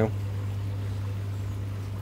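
Hozelock pond vacuum running steadily with a low hum, pumping water out of a fish tank through its hose.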